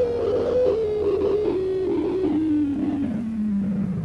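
Electric guitar music ending on a single tone that sinks steadily in pitch, in small steps, over several seconds, while its brightness fades away.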